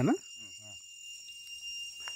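A spoken word ends at the start and a faint voice murmurs briefly. After that the quiet is filled by steady high-pitched insect calls, like crickets or cicadas.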